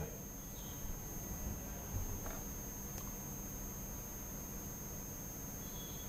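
Faint steady electrical hum and hiss with a thin, high-pitched whine, and a small faint blip about two seconds in. It is the background noise of the broadcast audio, with no speech.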